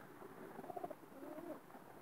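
Domestic pigeons cooing faintly: a few soft, low coos in the middle of an otherwise quiet stretch.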